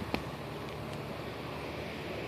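Steady low background rumble and hiss of outdoor ambience, with a brief click just after the start.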